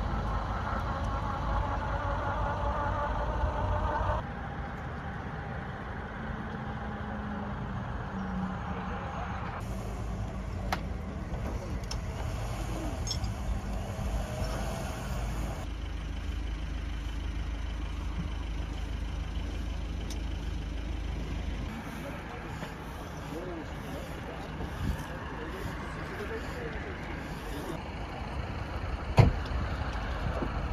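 Road-side ambience at a crash scene: a steady low rumble of idling vehicle engines with people's voices in the background. The sound changes abruptly several times, and there is one sharp knock near the end.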